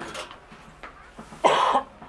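A man coughs once, a short loud cough about one and a half seconds in, after a stretch of low room sound.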